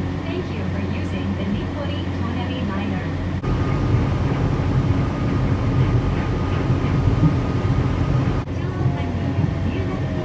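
Inside a rubber-tyred Nippori-Toneri Liner automated guideway car as it runs. There is a steady low rumble, and a steady motor whine from about three and a half seconds in. The sound changes abruptly there and again near the end.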